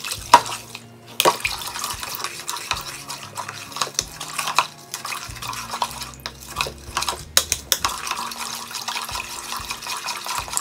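A spatula stirring milk with sugar and yeast in a bowl, with irregular knocks and scrapes against the sides and the liquid swishing: the sugar is being mixed in to dissolve.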